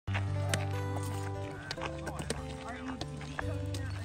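Background music: held bass notes and chords that change every second or two, with sharp percussive hits.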